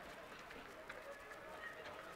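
Faint ice-hockey arena ambience: a low murmur of distant voices, with a faint click about a second in.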